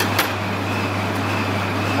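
Steady low mechanical hum of background machinery, with one small click shortly after the start.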